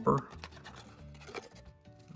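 Faint scraping and rubbing of thin card as the end flap of a small cardboard toy box is pulled open, over quiet background music. The end of a spoken word is heard right at the start.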